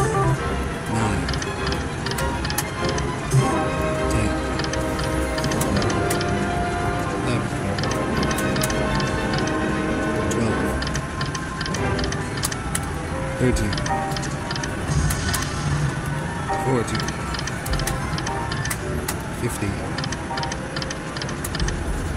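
Sizzling Wheel Mighty Tiger video slot machine running through several spins, about one every few seconds: electronic jingles and melodies over repeated sharp clicks as the reels spin and stop.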